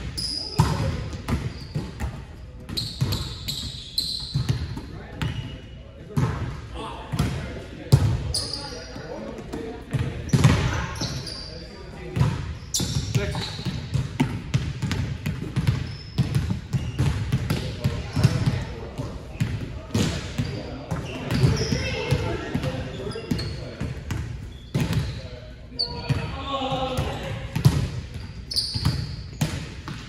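Volleyball being played in a gym: repeated sharp slaps of hands and forearms on the ball and the ball hitting the floor, among players' voices, echoing in the large hall.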